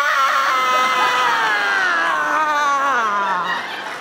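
A woman screams one long wordless scream into a microphone, acting out a small child's outburst. It slides steadily down in pitch and breaks off about three and a half seconds in.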